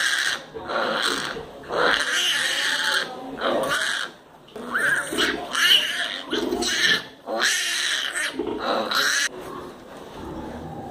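Piglets squealing in repeated loud, shrill bursts, each under a second long, as they fight over the sow's teats at nursing.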